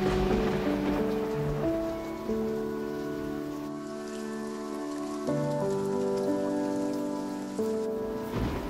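Ambient background music of held synth notes that change every second or so, laid over a steady rain-like hiss with a light crackle.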